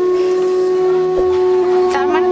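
Dramatic background music: a single long note, a steady drone with overtones, that comes in abruptly.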